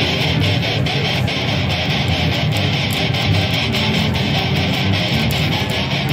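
Custom Jordan seven-string electric violin played through a Kemper Profiler amp with a heavy, distorted metal tone, bowed in repeated short, chopping strokes that bring out its low strings.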